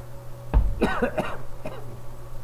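A man coughing: a short run of coughs starting about half a second in, the first the loudest, with a last one near the end.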